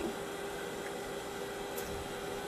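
Steady hiss with a constant low hum: the background noise of a running LC-MS instrument and its pumps and fans, idle before injection.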